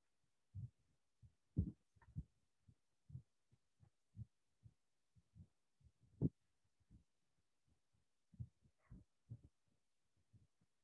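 Faint, irregular low thumps from handling noise on the microphone, one or two a second, with a few louder knocks.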